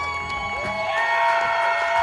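Audience cheering and whooping, with long held whistles and calls, just after a live band ends a song.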